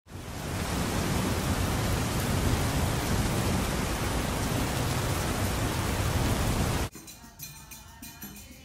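A loud, steady hiss of noise laid over the channel intro, cutting off abruptly about seven seconds in. Faint music follows.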